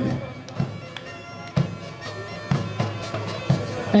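A bagpipe playing a tune over its steady drone, with a large frame drum struck about once a second.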